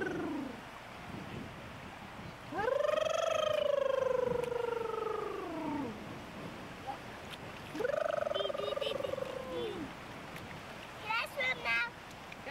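A child's voice giving long, drawn-out wordless calls, each rising and then slowly falling in pitch: one fades out at the start, then come two more, about three and two seconds long. Near the end there is a quick run of short, high-pitched cries.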